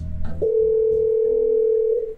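Electronic organ-like keyboard music: after a few short notes, a single long steady note is held.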